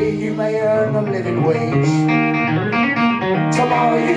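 A live rock band plays an instrumental passage without vocals: guitars and violin hold sustained notes, with one sharp hit near the end.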